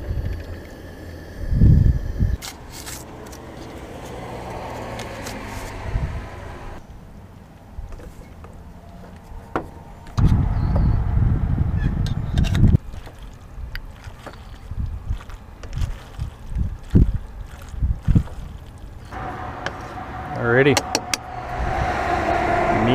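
Scattered clinks and scrapes of metal utensils against a stainless steel saucepan and an opened tin can while macaroni and tuna are stirred together, with a low rumble about halfway through.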